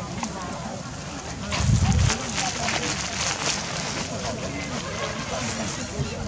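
Indistinct murmur of many people talking at once, with no single clear voice, and a brief low rumble about one and a half seconds in.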